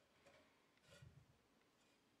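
Near silence, with a faint soft bump about a second in as strips of wood are handled on a plywood surface.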